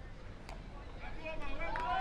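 Faint open-air ground noise with one sharp knock about half a second in, a cricket bat striking the ball; faint voices calling near the end.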